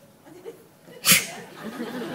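A person's voice: a sudden short hissing burst of breath a little past halfway, followed by brief voice sounds.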